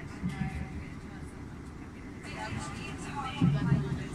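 Indistinct voices, faint at first and clearer and louder in the second half, over a steady low vehicle rumble.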